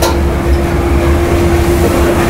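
Train passing on the elevated tracks close by: a heavy low rumble with a steady whine held through.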